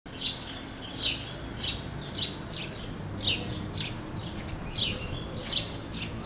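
A small bird chirping over and over, just under two short, high, downward-sliding chirps a second, over faint street background hum.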